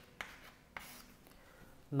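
Chalk writing on a chalkboard: two sharp taps within the first second, then faint scratching.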